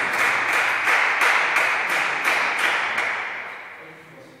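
Applause: many hands clapping after a point in a table-tennis match, dying away near the end.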